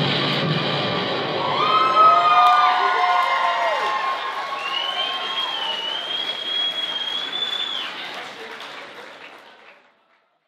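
Audience applauding and cheering, with several high whoops and yells, as the music ends; the applause fades out gradually toward the end.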